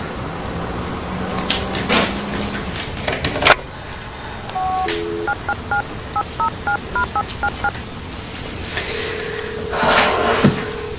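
Touch-tone telephone being dialled: a few handling clicks as the handset is picked up, then about eleven quick two-tone keypad beeps, followed near the end by a steady tone on the line.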